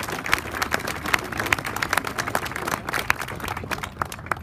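A crowd applauding, many hands clapping unevenly, the clapping thinning out near the end.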